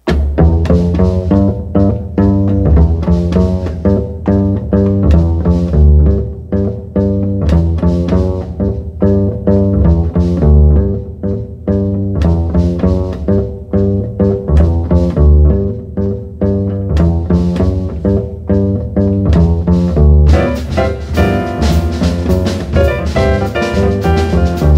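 Acoustic double bass opening a jazz tune with a fast plucked boogie line. Cymbals and drum kit come in strongly about twenty seconds in.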